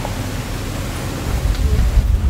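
Steady hiss-like noise with a low rumble, typical of wind on the microphone; the rumble grows stronger near the end.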